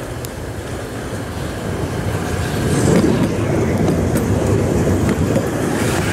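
Two-car Tatra T3 tram set running on rails as it approaches and passes close by: a rumble of wheels and running gear that grows louder until about three seconds in, then stays loud.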